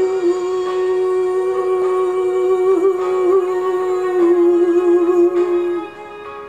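Gospel song with a female singer holding one long, steady note over soft backing music, wavering slightly around the middle and ending just before the end.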